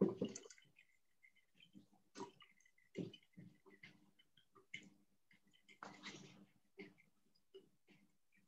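Faint sloshing of liquid swirled in a glass conical flask during a potassium permanganate titration, with scattered small clicks of glass and a short rush of noise about six seconds in.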